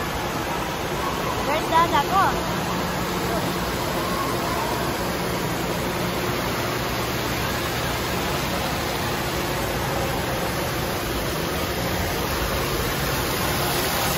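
Steady rush of falling and splashing water from an indoor water park's spray features, with the voices of swimmers around it. A brief shout rises over it about two seconds in.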